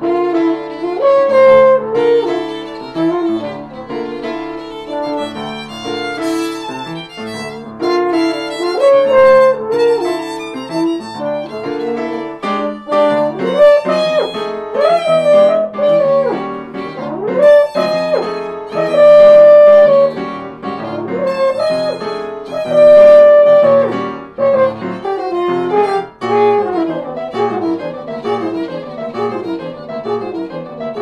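Live jazz trio of French horn, violin and piano playing together, the violin prominent over piano chords. Several notes slide in pitch in the middle, and there are long held notes in the second half.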